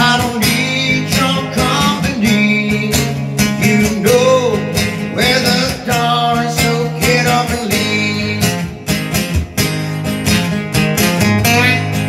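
Acoustic guitar strummed steadily in a country-style rhythm, with a man singing over it. The voice drops out near the end while the strumming carries on.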